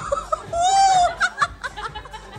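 A group of women laughing, with one long high held call about half a second in, then choppy bursts of laughter, over background music.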